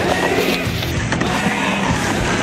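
Skateboard wheels rolling on pavement, a dense steady noise starting at the beginning, under background music.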